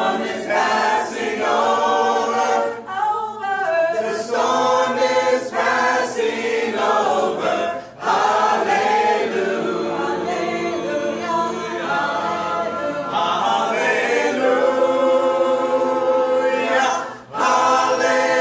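Congregation of men and women singing a hymn together unaccompanied, in long sung phrases with two brief pauses between lines.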